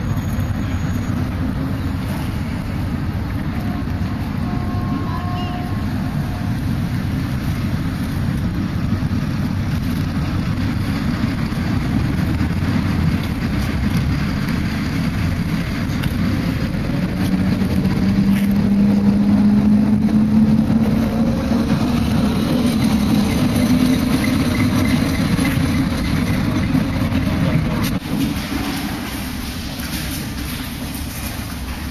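Steady low rumble of a road vehicle in motion, heard from on board. A few seconds past the middle an engine note rises slowly in pitch, and the rumble drops off suddenly near the end.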